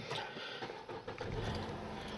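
A vehicle's engine starting and running inside the cabin: a low steady hum comes in about halfway through, over a faint hiss.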